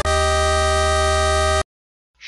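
Electronic music: a held synthesizer chord ends the preceding quick chord changes and cuts off suddenly after about a second and a half.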